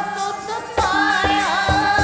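Sikh kirtan: a woman singing a hymn to her own harmonium's steady reed chords, with tabla strokes. A fuller sung phrase and the drum pattern come in just under a second in.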